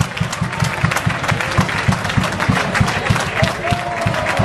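Spectators clapping, with crowd noise.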